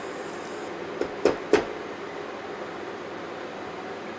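Sauce sautéing in a stainless steel skillet on an induction cooktop: a steady low sizzle and hum, with three short knocks between one and two seconds in from the silicone spatula against the pan.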